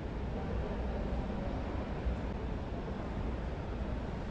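Steady low rumble and hiss of a small wheeled basket carrying the camera as it rolls and turns across a hard exhibition-hall floor, with the hall's background noise under it.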